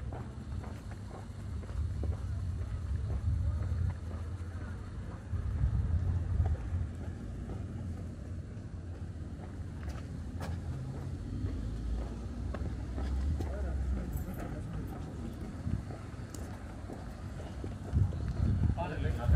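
Outdoor street ambience: an uneven low rumble that swells a couple of times, with a few sharp clicks and faint voices.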